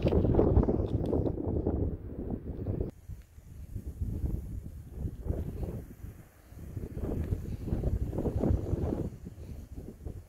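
Wind buffeting the microphone in uneven gusts, a rough low rumble that drops away briefly about three seconds in and again about six seconds in.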